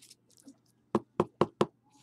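Four quick, sharp knocks about a fifth of a second apart, from hands handling a card box on a tabletop.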